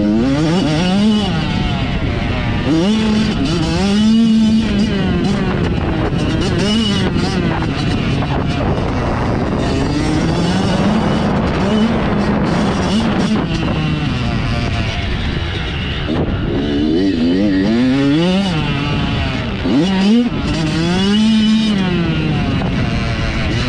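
Dirt bike engine racing around a motocross track, its pitch climbing hard through the gears and dropping off again every second or two as the throttle is opened and closed for jumps and corners. It is heard from a helmet-mounted camera, with a steady rush of wind over it.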